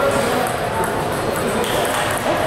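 Table tennis rally: the celluloid ball clicking off the paddles and table, over steady crowd chatter in a large hall.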